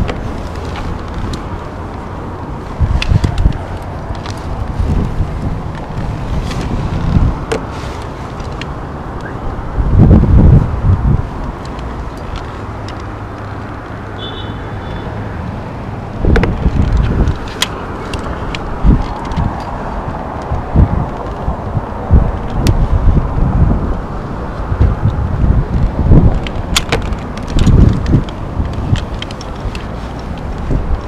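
Wind buffeting the microphone in repeated gusts, with the squeak and tick of a squeegee's rubber blade being drawn across window glass.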